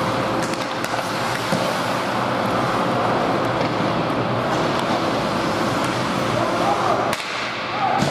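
Ice hockey game heard from the stands: a steady wash of skates on the ice and arena noise, with sharp clicks of sticks and puck and spectators' voices. The noise dips briefly near the end.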